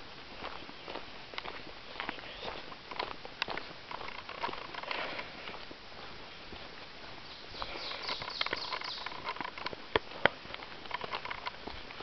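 Footsteps on a dirt and gravel forest trail, an irregular run of crunches and knocks, with a brief busier patch of higher-pitched crackling about eight seconds in and two sharper knocks near ten seconds.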